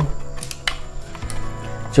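Soft background music with steady tones, over a few light clicks and rustles as a watch with a rubber strap is pulled out of its moulded plastic packaging insert.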